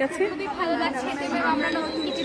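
Speech only: several girls' voices answering at once in overlapping chatter.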